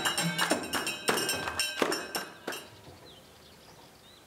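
Amazigh women's troupe beating hand-held frame drums and clapping in a quick, uneven rhythm; the playing trails off about two and a half seconds in.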